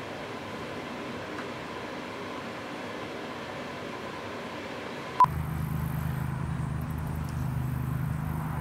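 Steady background hiss of room tone, broken about five seconds in by a short sharp beep, after which a lower steady hum takes over.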